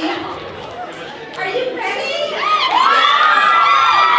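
Children shouting over crowd chatter, getting louder from about halfway in, with long high-pitched calls near the end.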